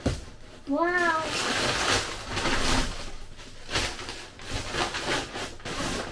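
Crumpled brown packing paper and cardboard rustling and crinkling in uneven bursts as hands dig through a parcel.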